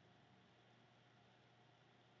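Near silence: faint steady room tone, a low hum under a light hiss.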